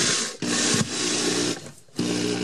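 Cordless power drill driving a screw into a wooden wall stud, the motor running in short bursts with a brief pause less than half a second in, then stopping about one and a half seconds in.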